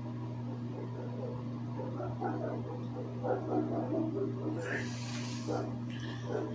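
A man's quiet, indistinct muttering over a steady low electrical hum, with a short breathy hiss about five seconds in.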